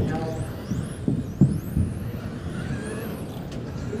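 Electric RC touring cars' brushless motors whining, the pitch repeatedly rising and falling as the cars accelerate and brake around the track. A few short low thumps sound in the first two seconds.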